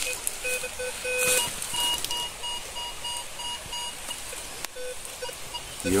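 Metal detector sounding a buried metal target: a run of short electronic beeps that switch between a low and several higher pitches as the coil passes over the spot.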